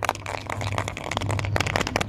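A hollow plastic surprise-egg capsule handled and turned in the fingers, making a dense crackling rustle of many small clicks.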